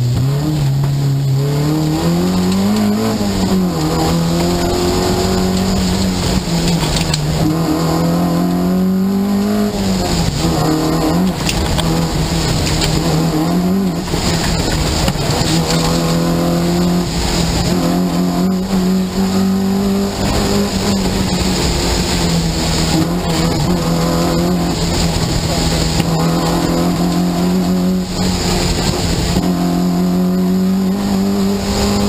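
Peugeot 205 GTI rally car's four-cylinder engine heard from inside the cabin, its note rising and falling with throttle and gear changes through the first half, then holding a steadier note for the second half.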